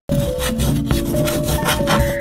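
Sidewalk chalk rubbing and scraping on a concrete pavement in quick repeated strokes, with light music underneath.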